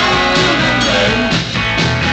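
Live garage rock band playing loudly, with electric bass and guitar up front over drums.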